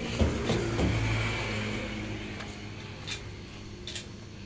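A motor vehicle's engine hum, strongest in the first second or so and then fading away steadily, with a few light clicks.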